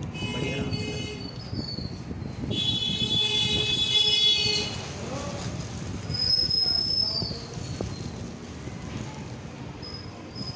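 A plastic courier mailer being handled and torn open by hand. Over it come high-pitched, horn-like tones: the loudest holds steady for about two seconds near the middle, and another, a few seconds later, drops in pitch as it ends.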